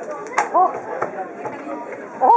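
Applause dying away: one last sharp clap about half a second in, then a short voice and the low murmur of the room.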